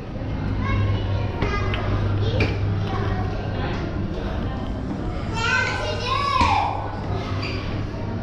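Children's and other people's voices echoing in a concrete stairwell, with a falling high-pitched child's cry about six seconds in, over a steady low hum.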